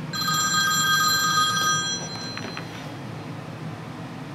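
Mobile phone ringtone sounding for an incoming call: a chord of steady high tones lasting about two seconds, then cut off, followed by a few faint clicks.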